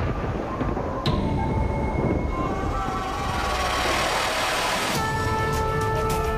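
Dramatic background score from a TV battle scene: a low rumble with a sharp hit about a second in, then a sudden switch about five seconds in to a held chord over quick ticking percussion.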